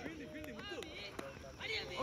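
Faint distant shouting voices from players out on a field, with one sharp click about a second in.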